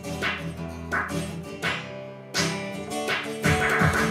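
Acoustic guitar strummed in a steady rhythm, about one strum every two-thirds of a second, between sung lines. Low percussion hits from an electronic hand-drum pad (Roland HandSonic) join in near the end.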